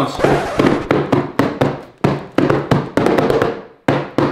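Hands drumming on boxed shoe packages wrapped in plastic mailer bags: a run of sharp slaps, about three to four a second in an uneven rhythm.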